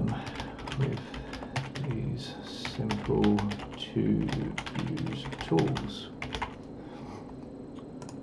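Typing on a computer keyboard: runs of quick keystrokes with short pauses between them, thinning out near the end.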